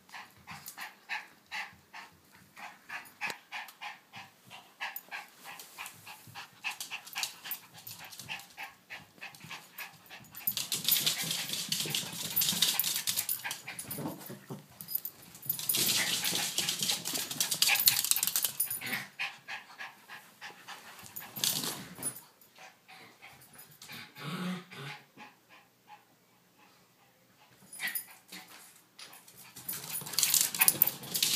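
A Yorkshire terrier and a King Charles spaniel puppy play-fighting, with a fast run of short dog noises and scuffling. In the middle there are two louder, noisier spells of a few seconds each.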